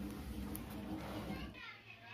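Quiet background of a steady low hum with faint distant voices. The hum drops out abruptly about one and a half seconds in.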